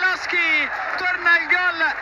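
A male football commentator's excited, raised voice, high in pitch, calling a goal.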